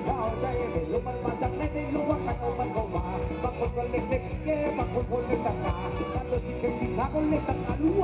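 A live band playing upbeat Thai ramwong dance music with a steady, driving drum beat and a melody over it.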